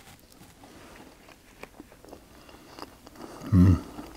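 A man chewing a mouthful of meatballs with mashed potato, with faint irregular clicks and mouth noises. Near the end he gives a short hummed "mhm".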